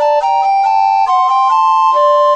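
Two recorder parts playing a Baroque duet in G minor: two clear, steady lines in even note values, one voice above the other, with a new note every few tenths of a second.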